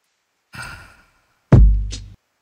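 An electronic kick drum sample with a deep bass tail hits about one and a half seconds in and decays, with a short bright click just before the end. About half a second in, a softer breathy sound comes first.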